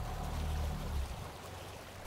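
Faint background sound bed of rushing water with a low steady drone underneath, fading down about a second in.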